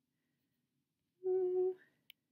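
A woman's short hum on one steady note, lasting about half a second, a little past the middle; before it there is near silence.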